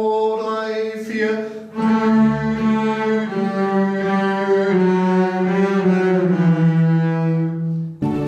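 A section of double basses bowing long held notes together in chords. The notes change every second or two, and the lowest line steps down toward the end.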